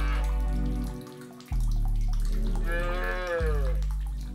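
A cow mooing over music with deep, held bass notes; the longest moo falls in pitch near the end.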